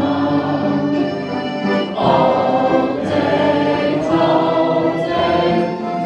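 Live folk music from an ensemble of concertinas with a flute, a full reedy sound that swells into a new phrase about two seconds in.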